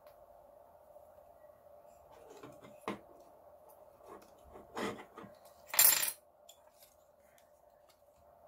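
Hard plastic parts of a Dyson DC23 cleaner head knocking and clicking as the turbine housing and belt arm are handled and fitted together, with the loudest clatter just before six seconds in.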